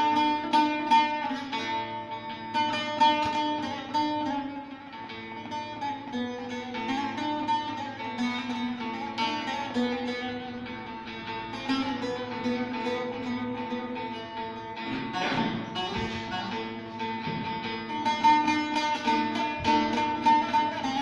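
Bağlama (Turkish long-necked saz) played solo, its plucked melody changing note by note over steady ringing drone tones, in an instrumental passage of a Turkish village folk song (köy türküsü).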